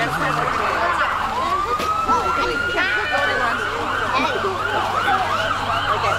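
A siren sounding continuously: a fast warble, then a long rising wail starting about a second and a half in, then a slower up-and-down warble, with people's voices beneath.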